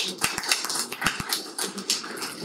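Small audience laughing and clapping, with scattered, uneven claps.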